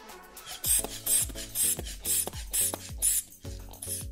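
Rubber inflation bulb of an aneroid blood-pressure monitor being squeezed over and over, about two strokes a second, each one a short rasping puff of air with a soft thud, pumping up the arm cuff toward about 200 mmHg.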